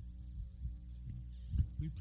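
Steady low electrical hum on the sound system, with a single low thump about one and a half seconds in.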